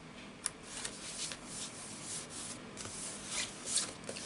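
Hands rubbing and pressing a glued card-stock panel flat onto a folded card base: a run of dry, papery swishing strokes, with a sharp click about half a second in.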